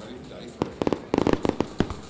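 Aerial fireworks going off: a quick run of sharp bangs and crackles starting about half a second in and lasting just over a second.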